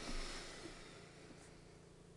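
Faint, steady low hum from a heater in a quiet room. A soft rush of noise in the first half-second fades away.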